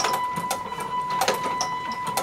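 Motorised plastic toy fighting robots clicking and clacking as their motor-driven arms punch and stepper motors shift them, with irregular sharp clicks over a steady high whine.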